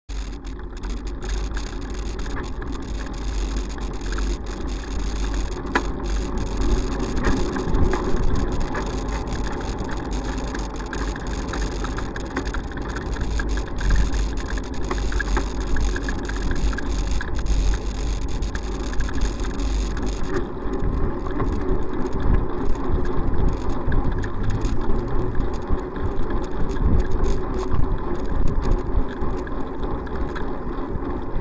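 Road traffic and car engines heard from a moving bicycle, mixed with a steady rumble of wind and road noise on the bike camera's microphone.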